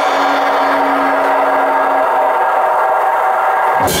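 Live rock band between sections: a loud, sustained wash of distorted electric guitar with the drums stopped, a low held note dying away a little past halfway. At the very end the full band comes back in with a drum hit, bass and cymbals.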